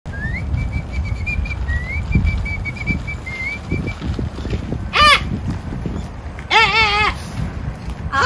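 Someone whistling a simple tune in short held notes with upward glides, over a low rumbling noise. The whistling stops about four seconds in, followed by a short high vocal cry and, near the end, a longer wavering high-pitched voice sound.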